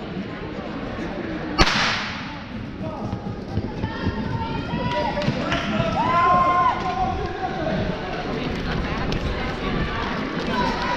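A starter's pistol fires once, a single sharp crack with a short echo in a large hall, starting a 200 m sprint. Spectators then shout and cheer the runners on.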